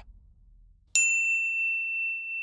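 A single notification-bell ding sound effect: a sharp strike about a second in, then a clear high ring that holds steady.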